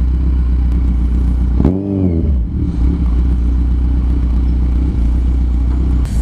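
Kawasaki Z1000's inline-four engine running at low speed in traffic, with a short rev that rises and falls about two seconds in.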